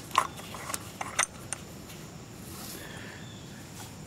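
A few light, sharp metal clicks in the first second and a half as the anti-backfire fuel solenoid is turned loose by hand from the bottom of a Walbro carburetor's float bowl.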